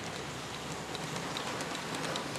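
Heljan 00 gauge Class 14 model diesel locomotive running on the layout's track: a steady rumble and hiss of the motor and wheels, with scattered light ticks from the wheels over the rail joints.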